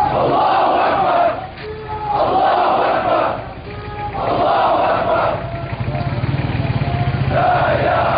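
A large crowd of men chanting in unison in short call-and-response phrases. A single voice calls in the gaps and the crowd answers loudly, about every two seconds.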